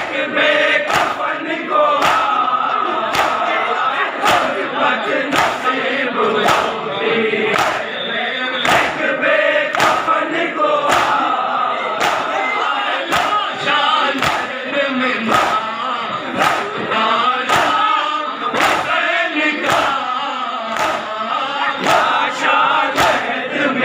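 A large crowd of men chanting a noha together in chorus, with hand-on-chest matam slaps landing in unison about twice a second.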